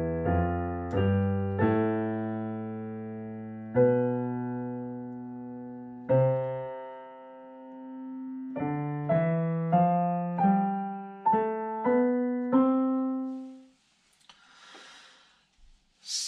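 Digital piano in a piano voice, played slowly note by note as a beginner's scale and fingering exercise, about two notes a second. Two longer held notes come midway, and the playing stops about two seconds before the end.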